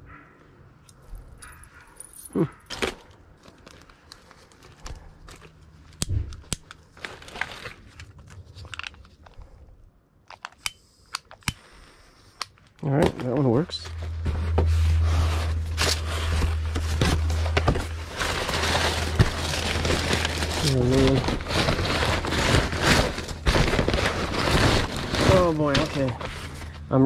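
Gloved hands rummaging through a cardboard box of loose papers: paper and cardboard rustling and crinkling. It starts as scattered handling clicks and becomes loud and continuous about halfway through.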